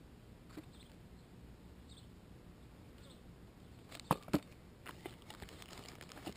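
Two sharp clicks in quick succession about four seconds in, from the moped clutch and its cardboard box being handled, over a quiet outdoor background with a few faint high chirps.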